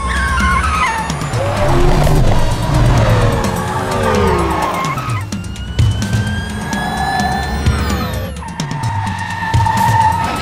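Car chase sound effects, with cars speeding and tyres squealing in long gliding tones, under a composed film score.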